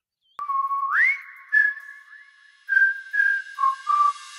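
A short whistled melody for a logo jingle, echoing: a held note slides upward about a second in, then several short notes follow after a brief pause.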